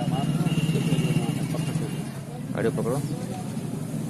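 A motor vehicle engine running steadily, a low even hum that weakens after about two and a half seconds, with a brief voice at that point.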